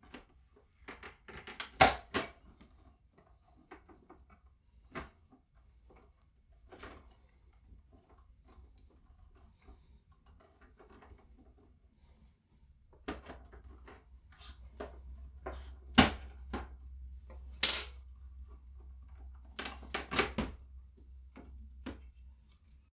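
Plastic clips of an iBook G3 Clamshell's display bezel clicking and snapping as the bezel is pried off the lid. Irregular sharp clicks throughout, with the loudest snaps coming about three-quarters of the way in.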